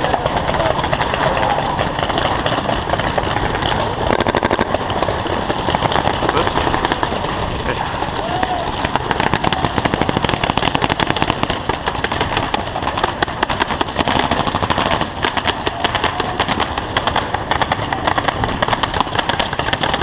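Many paintball markers firing across the field: a dense, continuous crackle of rapid pops, with players' voices mixed in.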